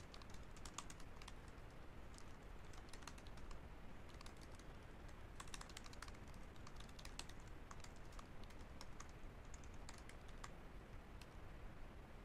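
Faint typing on a computer keyboard: quick key clicks in irregular bursts.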